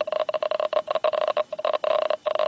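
Radiation survey meter with a handheld probe, its speaker clicking rapidly and irregularly at a high count rate from 16-percent uranium ore: the gamma radiation passes through the hand held between the rock and the probe.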